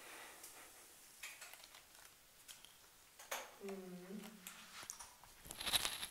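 Scattered small clicks, scrapes and rustles of objects being handled among debris. A short low murmured voice comes about halfway through, and a louder burst of clattering rustle comes near the end.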